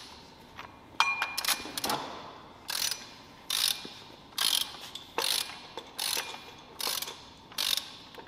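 Hand ratchet wrench running down the flywheel-to-crankshaft bolts on a BMW M52 engine. It makes short ratcheting strokes, repeated evenly a little under once a second.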